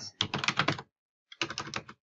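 Typing on a computer keyboard: two quick runs of keystrokes with a short pause between them about a second in.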